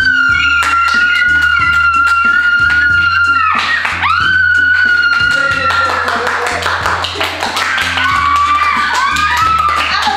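Children screaming with excitement: one long high scream held for about three seconds, then a second shorter one. These give way to clapping and shrieks over background music with a steady beat.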